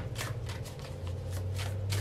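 Tarot deck being shuffled by hand: a run of soft, irregular card slaps, a few a second, over a steady low hum.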